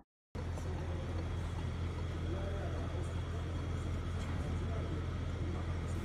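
Steady low rumble of road traffic with outdoor street noise, cutting in suddenly just after the start.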